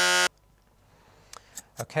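A quiz-show buzz-in tone sounds once, a short steady electronic buzz of about a third of a second, as a contestant buzzes in to answer. A brief spoken "OK" follows near the end.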